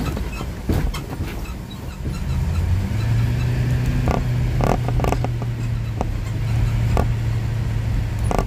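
Ride noise inside a moving road vehicle: engine and road rumble, with a low engine hum that steadies into a drone about three seconds in. Scattered small clicks and rattles come from the cabin.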